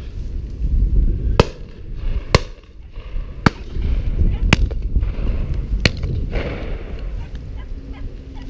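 Five sharp shotgun reports, irregularly spaced about a second apart, over a steady wind rumble on the microphone.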